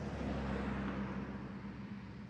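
Low rumble of distant road traffic that swells slightly in the first second, as if a vehicle passes, then fades.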